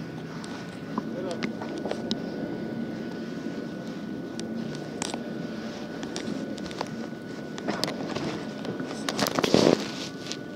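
Indistinct voices of people talking in the background, with scattered sharp clicks and a loud rustling burst near the end.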